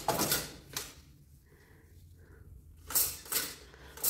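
Philips two-slot toaster's bread-carriage lever being pushed down and springing back up with a clattering click, once at the start and again about three seconds in.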